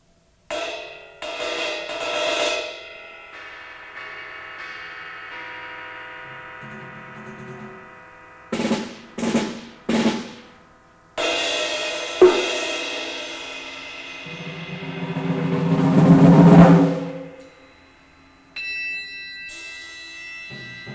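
Solo percussion piece: struck instruments ring on after each stroke, with three quick sharp strikes near the middle and a crash just after. A long swell then builds to the loudest point and dies away, and a fresh ringing stroke comes in near the end.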